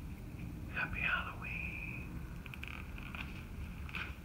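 A man's breathy whisper about a second in, ending in a drawn-out hiss, followed by a few faint clicks.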